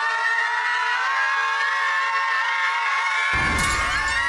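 A group of young men belting one long sung note together, its pitch slowly rising. About three seconds in, a sudden crash of breaking glass, an edited sound effect, cuts across it.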